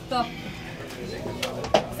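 Speech in a small room: a man calls out a short word ('stop') and other voices murmur, with a couple of sharp knocks near the end.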